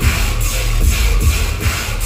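Loud electronic bass music from a live DJ set over a venue sound system, with a heavy deep bass and a steady beat.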